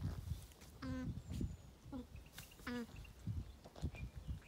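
Alpaca humming over her newborn cria: three short hums about a second apart, the middle one fainter. This is the soft contact hum a mother alpaca makes to her new baby.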